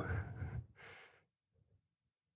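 A person's breathy exhale close to the microphone, fading over the first half-second, then a short faint breath just under a second in, followed by near silence.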